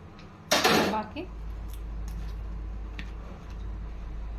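A metal spoon scraping and clinking against a stainless-steel pot while curd is spooned over the vadas. The loudest sound is one sharp half-second scrape about half a second in, followed by a few light clinks.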